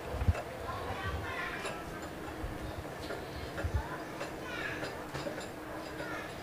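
A plastic washing-machine inlet hose connector being fitted onto a kitchen faucet: a few soft knocks and small ticks from the handling, with faint voices in the background.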